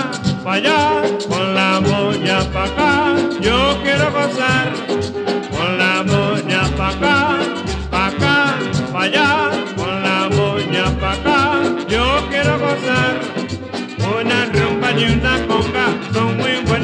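Vintage merengue band playing an instrumental passage with a steady dance beat, wavering melody lines and low bass notes recurring on the beat.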